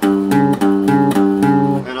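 Cutaway acoustic-electric guitar playing the same two- or three-note interval about six times in quick succession, each stroke ringing on. It sounds the tritone (augmented fourth or diminished fifth) just named.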